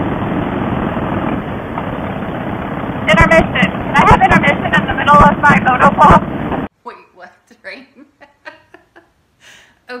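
Harley-Davidson Softail Fat Boy V-twin running at highway speed, its engine drone mixed with steady wind rush on the camera microphone, with muffled talking in the middle. About two-thirds of the way through the riding sound cuts off suddenly, leaving a quiet room with faint voice sounds.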